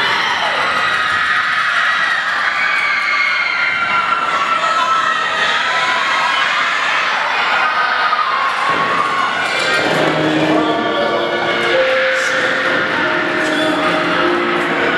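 A crowd cheering in a gym with music playing, the music coming through more fully past the middle.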